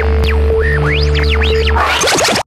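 Electronic music: swooping synthesizer pitch glides over a steady low bass drone. Near the end it breaks into a dense, glitchy flurry of sweeps.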